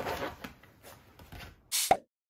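French bulldog puppy wriggling on its back on a leather sofa, its body and harness rubbing against the leather, loudest about the first half second. Near the end comes a short, loud edited-in sound effect with a falling tone, cut off sharply.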